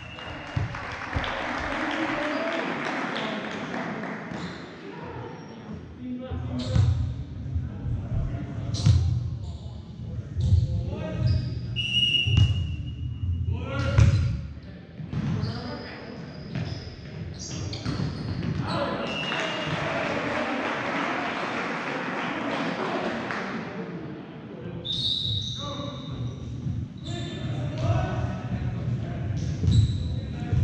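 Volleyball play in a large, echoing gym: ball contacts and thuds, short high squeaks of sneakers on the court, and players and spectators shouting, with two stretches of crowd noise, one at the start and one in the middle.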